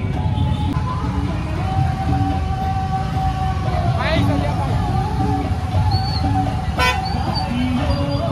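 Busy street traffic with vehicle horns honking: one long held horn tone, then a short sharp honk near the end, over a steady rumble of traffic and crowd voices.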